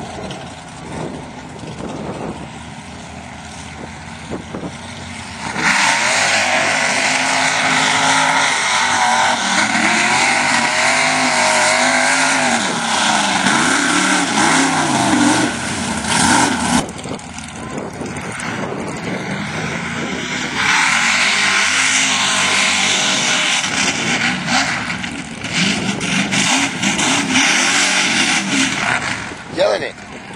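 Mud-bog truck engines run at high revs through a mud pit in two long loud runs, the pitch rising and falling as the throttle works. Quieter engine running comes before and between them.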